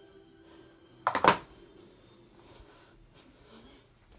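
Hand tools being handled: a brief clatter of a few quick knocks about a second in, against a quiet small room.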